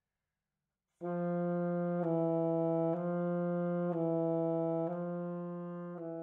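Alto saxophone slurring back and forth between low written D and C-sharp, starting about a second in and changing note about once a second. It is a warm-up check that the low C-sharp key's pad opens and closes freely and does not stick.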